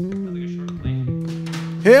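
Electric bass guitar playing a few held notes during a soundcheck, changing notes about a second in.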